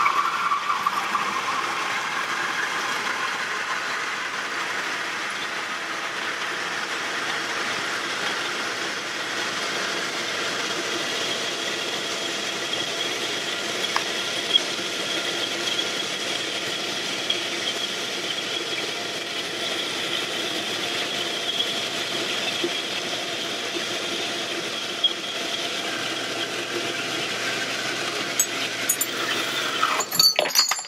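Horizontal metal-cutting bandsaw with a Q501 IC bimetal blade running steadily through a clamped stack of fourteen pieces of thick angle iron, a steady high whine over a grinding hiss as the blade works its way down through the steel.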